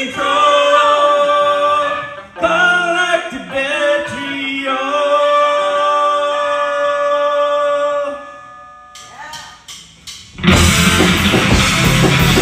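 Live psychedelic heavy rock band: long held sung notes over guitar for about eight seconds, then the music drops almost to nothing for about two seconds before the full band with drums comes back in loudly near the end.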